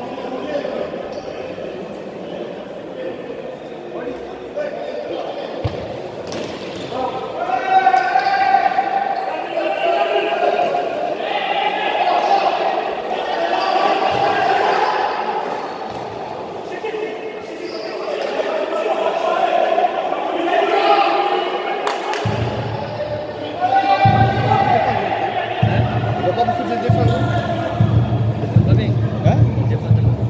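A futsal ball being kicked and bouncing on a wooden sports-hall floor, with players' raised voices calling out, all echoing through a large indoor hall. A steady low rumble comes in about two-thirds of the way through.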